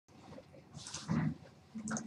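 Two brief, faint low vocal sounds from a person, a mutter or throat noise, about a second in and again near the end.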